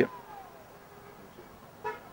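Faint distant vehicle horn over quiet outdoor background noise: a tone that falls in pitch, then holds steady for about a second. A short vocal sound comes near the end.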